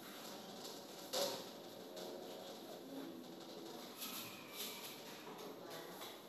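Faint background sound with a low bird call, and one sharp click about a second in.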